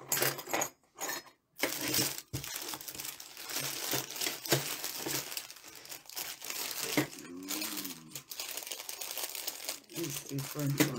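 Clear plastic jewelry bags crinkling as they are handled and opened, a dense crackle that starts about a second and a half in and keeps going.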